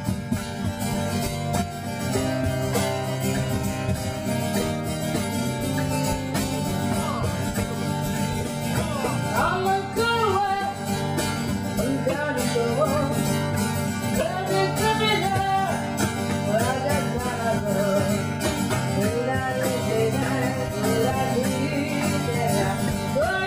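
A young girl singing a song live, accompanied by a strummed acoustic guitar and a cajon keeping the beat.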